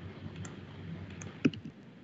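Scattered clicks of a computer mouse and keyboard, with one louder click about one and a half seconds in, over a low background hum.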